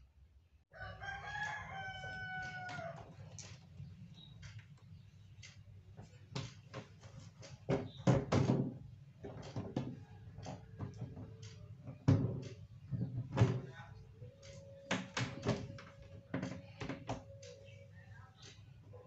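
A rooster crowing once in the background, about a second in, lasting about two seconds. It is followed by scattered clicks and knocks as the refrigerator door and its hinge parts are handled and fitted.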